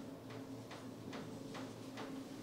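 Faint, quick scratching ticks of a marker pen writing on a whiteboard, about two strokes a second, over a low steady room hum.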